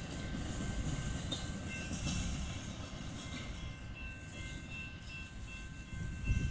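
Norfolk Southern freight train rolling by, a steady low rumble with faint steady high tones above it.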